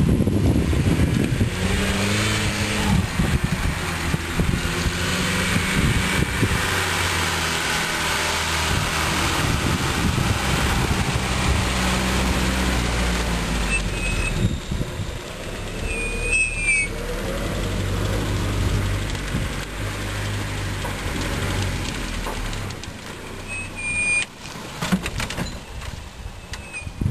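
Series Land Rover engine pulling the short-wheelbase 4x4 across a grassy off-road slope, its revs stepping up and down, then fading as it moves away near the end. A few short high squeaks come about two-thirds through and again near the end.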